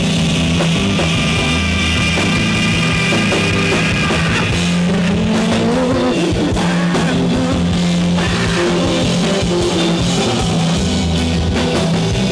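Rock band playing live without vocals: electric guitar, bass guitar and drum kit, with a note sliding upward about halfway through.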